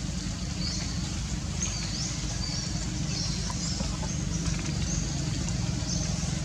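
Outdoor ambience: a steady low rumble, with small birds giving repeated short, high chirps throughout.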